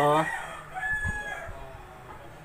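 A rooster crowing once, faint, held on one pitch for most of a second, just after the end of a spoken word.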